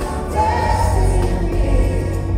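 Live pop ballad played through a concert PA, with male group vocal harmonies over the band and heavy bass, heard from the audience in an arena; a sung note is held from about half a second in.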